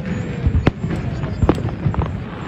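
Aerial fireworks shells bursting: three sharp bangs, the first at the start and the others about a second apart, over a steady low background rumble from the display.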